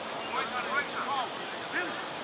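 Footballers' voices, short shouts and calls across the pitch, heard over a steady outdoor hiss.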